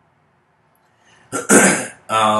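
After more than a second of near silence, a man clears his throat once, a short, loud rasp about a second and a half in.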